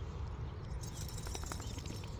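Light footsteps and rustling on dirt and dry grass, with a cluster of soft ticks about a second in, over a low steady background.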